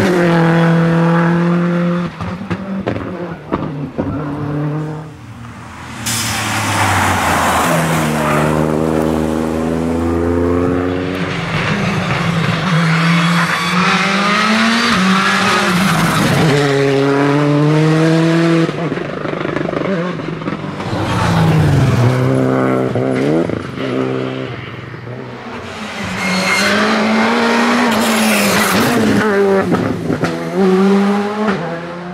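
Rally cars, among them a Hyundai i20 R5 and a Skoda Fabia R5, driving flat out one after another, their engines revving up and dropping sharply with quick gear changes and lifts. The sound runs loud almost without a break, easing briefly twice.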